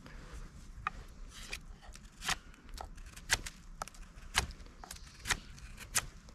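Small fixed-blade neck knife carving a fresh green stick: a string of short, crisp cuts as the blade slices into the wood, about one or two a second, some sharper than others.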